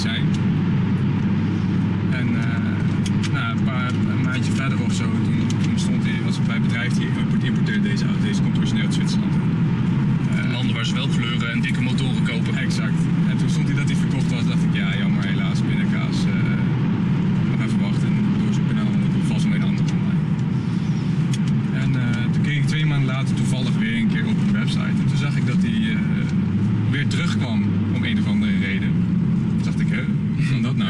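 Steady in-cabin road and engine drone of a Volvo C30 T5 with its five-cylinder petrol engine, cruising at road speed.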